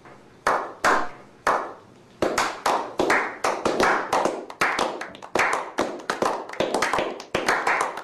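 A small group of men clapping their hands: a few slow, single claps that pick up about two seconds in into faster, overlapping applause.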